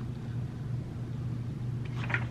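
A steady low hum with faint background noise, no other event.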